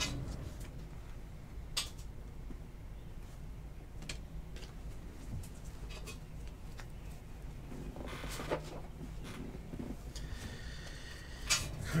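Light handling sounds over low room hum: a few scattered soft clicks and taps as a stack of trading cards is gathered up off a table mat.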